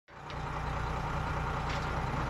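Car-carrier truck's engine idling steadily with a low, even drone.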